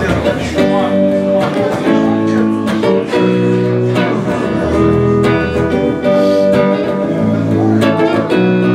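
Electric guitar strumming a chord progression, each chord held for about a second and a half before the next.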